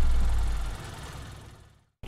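Deep low rumble with a hiss over it from the intro logo sting. It fades away to silence just before the end.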